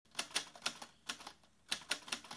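Typewriter keys clacking as a text-typing sound effect: a quick uneven run of sharp strikes, a short pause, then more strikes near the end.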